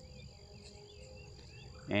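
Faint outdoor ambience: a steady high-pitched trill like crickets or other insects, with a few faint chirps over it.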